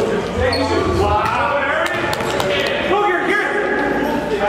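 A basketball bouncing on a gym floor during play, with players' voices echoing around the hall.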